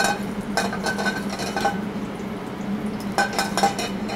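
Stainless steel sauté pan clinking and scraping on the gas range, with garlic cooking in olive oil, in a few short clusters of clicks with a faint metallic ring.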